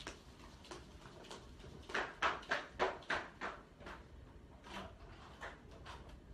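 Faint clicks and knocks of a room door being opened a few metres away, with a quick run of them, about four a second, starting about two seconds in and a few more near the end.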